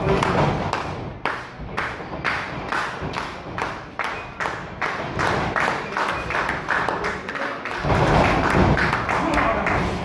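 Rhythmic hand clapping, about three claps a second, mixed with thuds from the wrestling ring. In the last two seconds it gives way to a louder, denser stretch of thuds and crowd noise.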